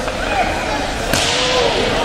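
Ice hockey in play on an indoor rink: a sharp crack about a second in, followed by a hiss of skate blades scraping the ice that fades over most of a second.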